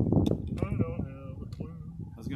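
A person's voice speaking indistinctly, after a brief rush of noise at the start.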